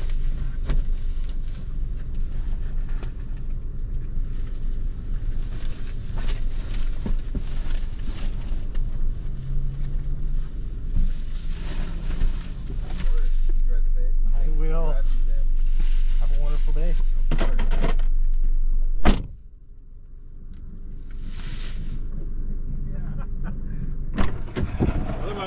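Grocery bags being loaded onto a car's back seat through an open rear door, with a steady outdoor rumble coming in. About 19 seconds in, the car door is shut with a single thud and the outside noise drops away.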